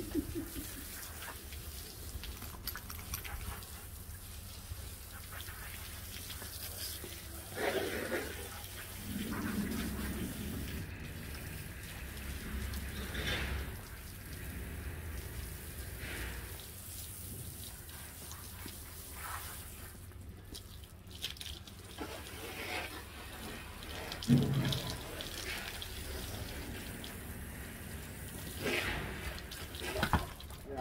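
Water from a garden hose spraying and splashing over a horse's coat while it is being bathed. A few brief louder sounds break in, the loudest about 24 seconds in.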